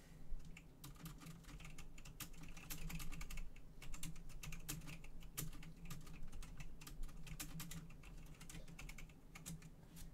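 Typing on a computer keyboard: a quick, irregular run of keystroke clicks, over a steady low hum.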